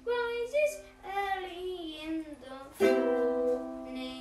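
Music: a ukulele playing under a wavering singing voice, ending on a final strummed chord about three seconds in that is left to ring and fade.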